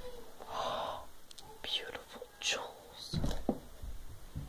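Whispering: a few short breathy whispered phrases.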